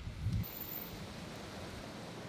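Steady soft outdoor hiss of a breeze and rustling leaves, with a brief low rumble in the first half second.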